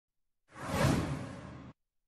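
A single whoosh sound effect for an animated title intro. It swells in about half a second in, peaks, fades, and cuts off suddenly near the end.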